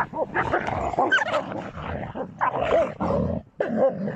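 A Tibetan mastiff and another large canine fighting, with rapid snarling and growling broken by short high yelps and whines. The noise dips briefly about three and a half seconds in, then resumes.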